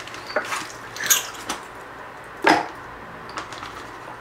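Hand rummaging in a plastic bag of Simple Green cleaning solution: wet sloshing and plastic crinkling, heard as a few short separate handling sounds.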